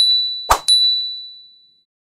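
Two bright ding sound effects, each struck just after a short pop. The first rings out right at the start. The second is struck about half a second in and fades away over about a second.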